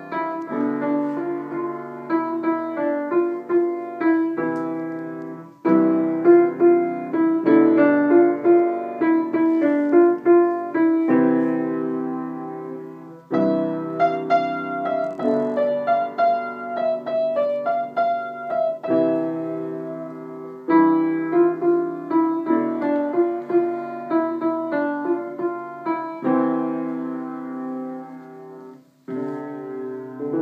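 Wooden upright acoustic piano played by a child: a piece mostly in the middle register, in phrases a few seconds long with brief pauses between them, and a short stop near the end.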